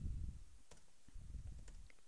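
A few faint clicks of keys being struck on a computer keyboard as a command is typed.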